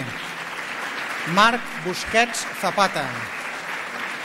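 Audience and officials applauding steadily, with short spoken phrases heard over the clapping.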